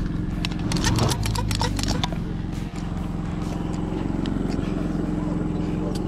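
Portable inverter generator running at a steady hum. A quick run of sharp clicks in the first two seconds comes from a construction-adhesive tube being cut and worked in a caulk gun.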